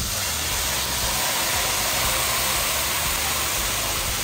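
Steeped saffron liquid poured into a hot stainless-steel pan of sautéed rice and peppers, sizzling and hissing as it flashes to steam. The hiss starts suddenly with the pour and holds steady and loud.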